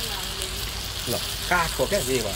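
Chicken pieces sizzling in an iron pan over a wood fire: a steady hiss of frying. A person's brief voice cuts in twice in the second half, loudest near the end.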